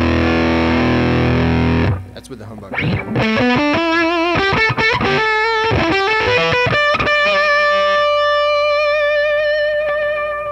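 Electric guitar (Stratocaster) played through a hand-built Jordan Bosstone fuzz clone with the fuzz knob and guitar volume both full up, into a Dumble 124 clone amp. A thick fuzzed chord rings and cuts off about two seconds in. After a short gap comes a single-note lead line with vibrato, ending in one long sustained note.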